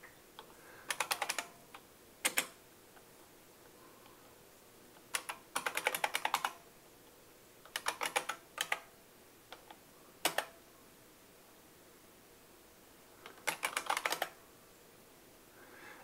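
Typing on a computer keyboard: short runs of rapid keystrokes with pauses of one to three seconds between them, and a couple of single key presses.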